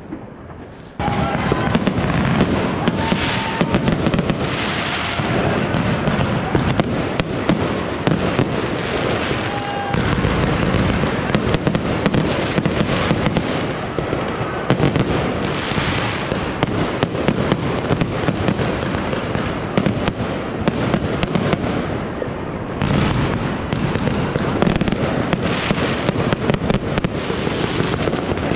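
Many fireworks going off together: a dense, continuous crackle of firecracker bangs and rocket bursts. It starts abruptly about a second in.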